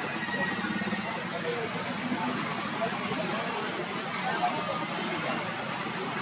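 Indistinct background voices, a steady murmur of chatter with no clear words, over a constant outdoor hiss.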